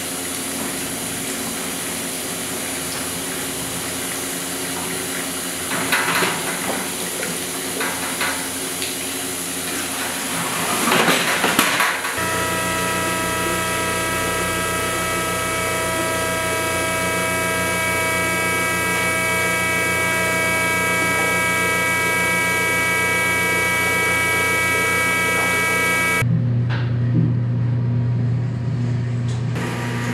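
Filter cloth rustles as it is folded over beet pulp in a stainless press basket, over a steady machine hum. About twelve seconds in, a juice press's electric motor starts and runs with a steady whine and a fast rhythmic pulse while it squeezes the bagged pulp. Near the end this gives way to a deeper hum.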